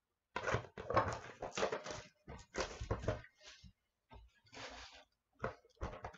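Rustling and crinkling of card-pack packaging being handled and opened, in an irregular run of scrapes and crackles for the first few seconds, then a couple of shorter rustles near the end.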